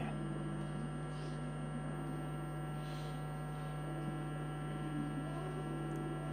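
Steady electrical mains hum on the broadcast sound, with faint room noise under it.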